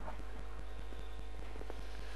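Quiet studio room tone: a steady low hum with a fast, even run of faint clicks, several a second.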